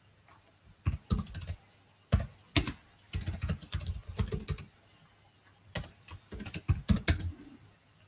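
Computer keyboard typing in four quick runs of keystrokes with short pauses between.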